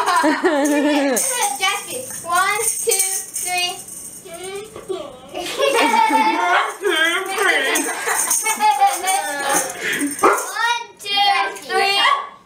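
Laughter and unclear voices of adults and children. For the first few seconds a high jingle or rattle runs under them.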